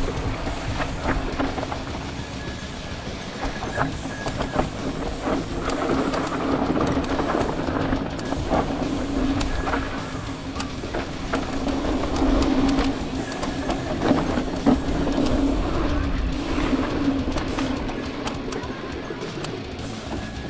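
Background guitar music mixed with the rattle and clatter of a mountain bike riding down a rough dirt trail.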